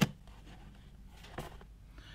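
A sharp click as a screwdriver is set down on the workbench, then a softer knock about a second and a half in as a hardboard panel is lifted off a plastic case.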